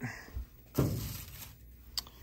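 A brief clatter as a metal trigger wheel is picked up off a bench strewn with papers, fading over about half a second, with a sharp click near the end.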